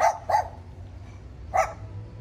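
A dog barking: three short barks, two close together at the start and one more about a second and a half in.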